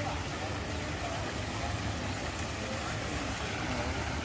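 Outdoor ambience: faint, indistinct voices of people nearby over a steady low rumble.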